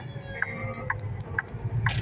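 Low, steady diesel engine rumble heard inside a semi-truck's cab while it drives slowly, with a few short sharp clicks scattered through it.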